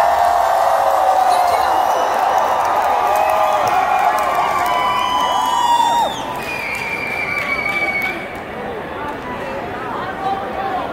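Concert crowd cheering and screaming at the end of a song, with many voices rising and falling over each other. It is loud for about six seconds, then falls quieter.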